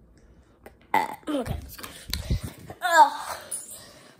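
A girl's voice making wordless sounds: a drawn-out, deep vocal sound with falling pitch starting about a second in, then a short pitched vocal sound near the three-second mark.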